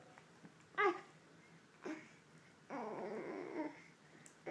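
A dog whining and grumbling as a baby grabs at its muzzle: a short, loud whine about a second in, a brief sound just after, then a longer grumble of about a second near the end.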